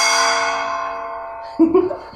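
A gong rings out after a single stroke, several steady tones fading slowly. It is the signal to start the bout.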